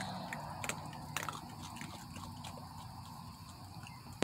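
Raccoons, young ones among them, crunching and chewing dry kibble: irregular small crunches and clicks.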